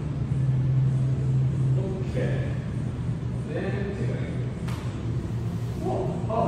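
A low steady hum with faint, unintelligible voices over it and one sharp click a little before the end.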